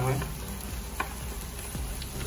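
Scrambled fish roe with eggplant frying in a kadai, sizzling softly while a wooden spatula stirs and scrapes through it, with one sharp tap about a second in.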